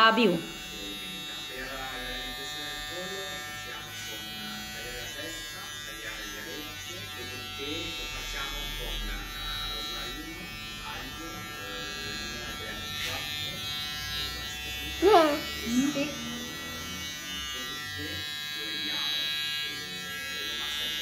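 Cordless hair trimmer buzzing steadily as it cuts short hair along a child's hairline at the temple and sideburn.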